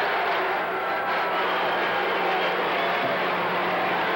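Gymnasium crowd noise: a dense, steady din of many spectators' voices, over a constant low hum.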